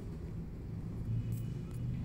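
A low, steady background rumble, with no speech.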